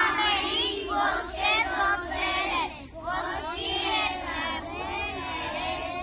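A group of children singing together, with a short break about three seconds in.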